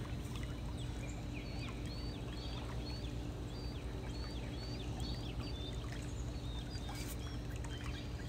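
A bird repeating a short high chirp about twice a second over a steady low hum.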